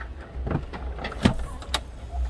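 Electric motor of a 2015 Mercedes GL 350's power-folding rear seat, running as the seatback folds forward, with a few clicks and knocks along the way.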